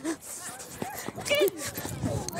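Unscripted voices calling out, with one loud, high-pitched shout about one and a half seconds in.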